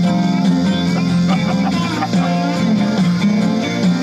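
Country music with guitar playing steadily.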